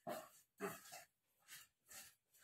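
A dog's faint, short yips, several in quick succession.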